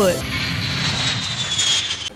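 Jet aircraft engine sound: a steady rushing noise with a high whine that falls slowly in pitch, as of a plane passing, cut off abruptly at the end.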